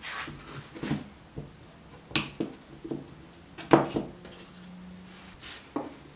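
Tools and parts being picked up and set down on a workbench: a handful of separate knocks and clatters, the loudest a little past halfway.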